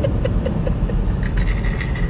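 6.2-litre V8 of a 2018 Chevrolet Camaro SS running under way, a steady low rumble with road noise heard from inside the cabin. Rapid laughter, about five pulses a second, sounds over it during the first part.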